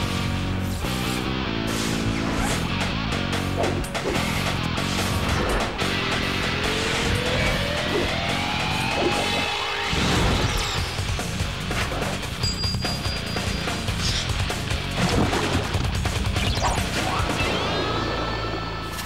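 Cartoon transformation-sequence soundtrack: driving action music layered with crashing impact hits and electric zap effects, with a long rising sweep in the middle.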